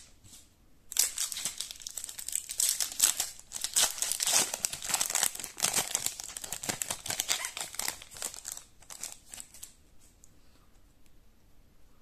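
A foil trading-card pack being crinkled and torn open by hand. The dense crackle of the foil starts about a second in, runs for several seconds, and dies away near the end.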